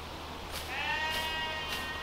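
Hand scythe swishing through long grass in quick regular strokes, about one every 0.6 seconds. Over the strokes, a single drawn-out animal bleat starts about two-thirds of a second in and lasts more than a second; it is the loudest sound.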